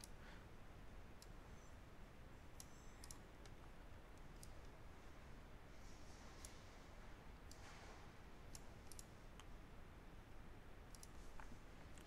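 Faint computer mouse clicks, a dozen or so at irregular intervals, some in quick pairs, over a low steady room hiss.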